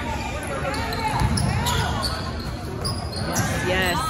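Basketball game in a gymnasium: a ball bouncing on the hardwood floor among players' movement and background voices.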